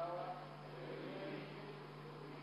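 Faint, indistinct voices echoing in a large chamber over a steady low hum, louder in the first second or so.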